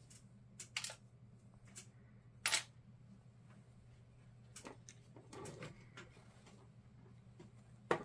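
Scattered sharp clicks and clacks of small tools and die-cast metal cap-gun parts being handled and set down on a workbench, with a short scraping shuffle about five and a half seconds in. A steady low hum runs underneath.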